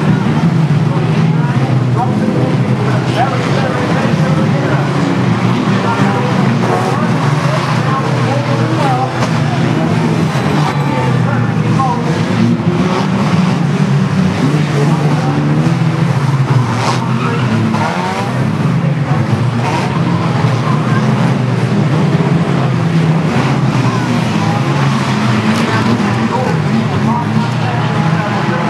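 Several banger racing cars' engines running hard as they race round the track, with tyres skidding and a sharp bang about two-thirds of the way through.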